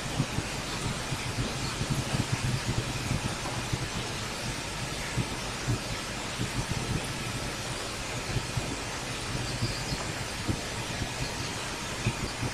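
Steady background hiss with a low hum and faint crackling throughout, the noise floor of an open microphone.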